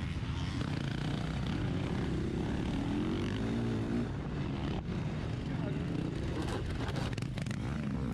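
KTM motocross bike's engine running at race pace, heard from the rider's camera, its pitch rising and falling with the throttle, with a sharp knock about five seconds in.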